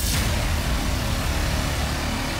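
Opening of a podcast intro jingle: a loud, steady noise-and-rumble sound effect with music beneath it.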